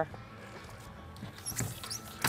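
A gaffed blacktip shark being hauled over the side onto a boat deck: mostly quiet, then a few faint knocks and clicks in the second half, with a brief high squeak about one and a half seconds in.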